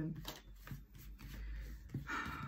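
Tarot cards being handled and slid on a cloth-covered table: a few soft flicks and rustles.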